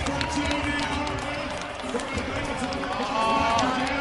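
Monster truck engine running hard while the truck spins a donut, under arena crowd noise and nearby voices.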